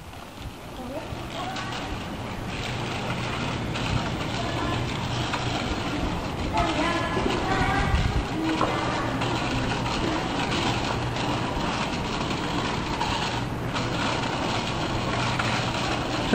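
A child's small bicycle with training wheels rolling over concrete paving: a steady rumble that builds about a second in and keeps on, with faint voices in the background around the middle.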